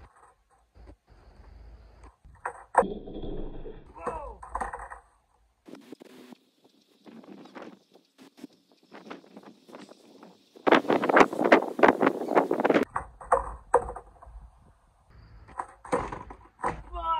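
Skateboard on concrete in a string of kickflip attempts: the board's wheels rolling, the deck slapping and clattering down on bails, loudest in a dense burst of clatter about 11 seconds in. Short vocal outbursts from the skater come between the impacts.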